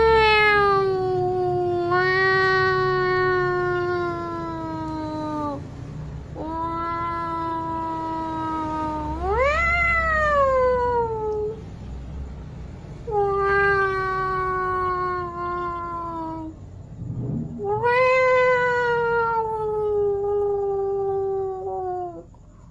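Domestic cat yowling: four long drawn-out calls of several seconds each, mostly sliding slowly down in pitch. The second call swoops sharply up partway through and falls again.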